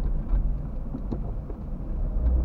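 Car driving at low speed, heard from inside the cabin: a steady low road-and-engine rumble, with a few faint clicks.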